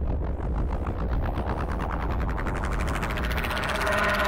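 A synthesizer passage in a 1980s synth-pop track: a rapid train of electronic pulses, like machine-gun fire, over a low rumbling drone. The pulses grow faster and brighter toward the end, building up to the next section.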